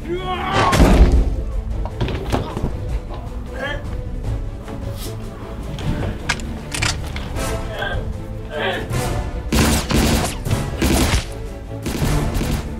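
Action-film soundtrack of a fist fight: steady music with repeated punch and body-impact thuds, the heaviest about a second in, and occasional shouts and grunts.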